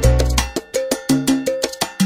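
Salsa band playing in a steady, syncopated rhythm, with cowbell and percussion strokes over sustained bass notes.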